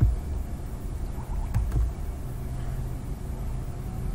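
Low, steady background rumble picked up by the recording microphone, with a single faint click about one and a half seconds in.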